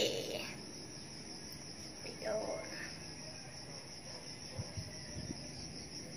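Steady high-pitched chorus of insects calling from the surrounding tropical forest, with a faint voice briefly about two seconds in.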